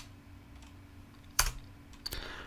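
A single computer keyboard keystroke about a second and a half in, entering the CIRCLE command, over a faint steady low hum.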